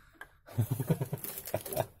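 A man laughing quietly under his breath in short, low voiced chuckles, starting about half a second in.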